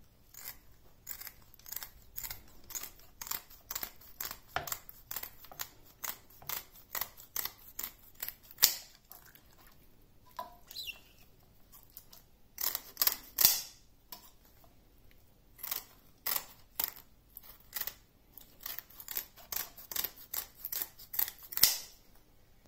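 Kitchen scissors snipping repeatedly through the fins of a raw turbot, about two short cuts a second, with a couple of brief pauses between runs of cuts.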